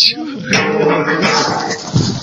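Indistinct voices talking, with no single clear speaker.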